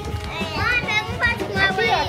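Young children's high voices chattering and calling out as they play, with background music underneath.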